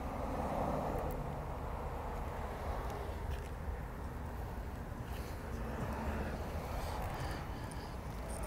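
Steady low background rumble and hiss with a few faint ticks, no distinct event.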